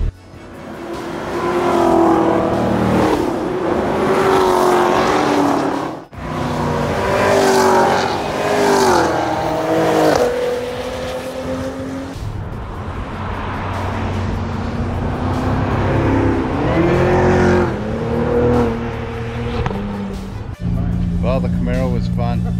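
Cars running on a race circuit, with engines rising and falling, mixed with background music.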